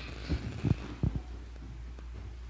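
Three or four dull thumps from children's footsteps on the carpeted platform as they walk off, over a steady low hum.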